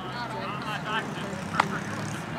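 Indistinct voices of players and onlookers over a steady low hum of distant traffic, with a sharp knock about one and a half seconds in.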